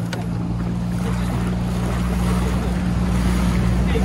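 A motorboat's outboard engine opening up at the start and then running steadily under way, with water rushing along the hull and wind on the microphone.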